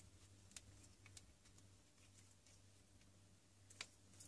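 Near silence with a low steady hum, broken by a few faint clicks and taps as an aluminium collet is worked over the end of an air rifle's steel air cylinder, the clearest click near the end.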